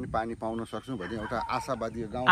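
A man talking: continuous speech with no other sound standing out.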